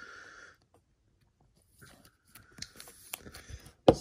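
Brief rustle of a thin plastic trading-card sleeve as a card is slid into it. After a short pause comes a run of light crinkles and small clicks of plastic being handled.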